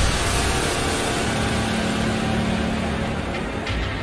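Cinematic intro sound effect: a dense, low rumble that holds and slowly fades, with a faint steady hum in the middle and a couple of faint ticks near the end.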